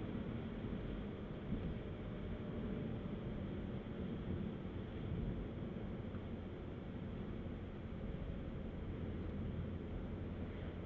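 Mini Cooper S 2.0-litre turbo engine and tyre noise, heard from inside the cabin as the car drives at a steady pace. It is a steady low drone with no sudden sounds.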